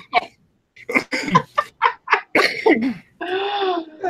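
People laughing in a run of short bursts after a brief pause, ending in a longer held vocal sound near the end.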